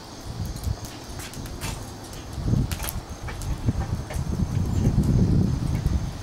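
Chunks of mesquite wood being set down one by one onto lit charcoal, giving a scatter of light clicks and knocks of wood on coals. A low rumble comes in about halfway through and is the loudest sound.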